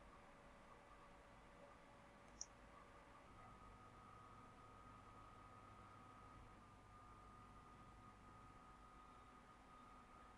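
Near silence: faint room tone with a thin steady hum and one brief, faint click about two and a half seconds in.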